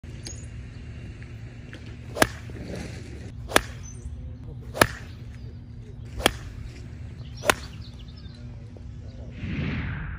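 Five crisp cracks of a golf iron striking range balls, roughly a second and a quarter apart, over a steady low rumble. Near the end a swelling whoosh comes in.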